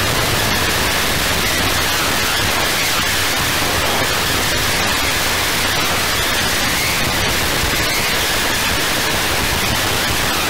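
Harsh noise electronics: a loud, steady wall of dense static hiss filling every pitch, with no beat or melody.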